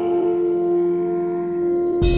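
Dark ambient synth music: one long held tone with a steady overtone above it, the deep bass underneath thinning out and returning right at the end.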